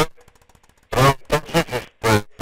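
Speech: a voice talking in short phrases, with a pause of nearly a second near the start.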